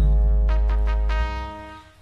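Instrumental passage of a recorded song: a brass section with trumpets and trombones plays a held chord over bass, struck loudly at the start and fading out toward the end.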